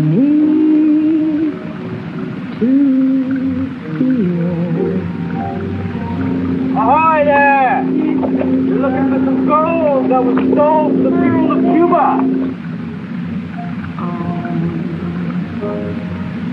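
A woman singing a slow, wordless-sounding melody with musical accompaniment: long held notes that slide in pitch, then a high wavering run in the middle over a sustained lower note.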